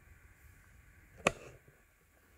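A single sharp knock of hard objects striking, about a second in, with a short ringing after it.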